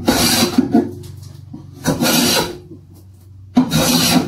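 Block plane shaving the edge of an oak board: three push strokes about two seconds apart, each a short scraping swish of the blade cutting thin shavings, the sign of a properly set-up plane.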